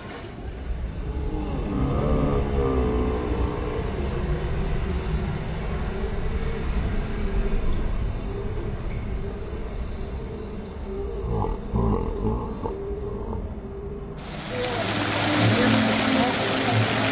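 A muffled low rumble with wavering, drawn-out tones; about fourteen seconds in it cuts to the steady rush of a fountain's splashing water.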